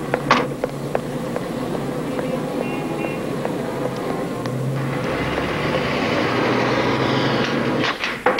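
City street traffic with a car engine running at low revs. A car door shuts shortly after the start, and a vehicle's noise swells over the last few seconds.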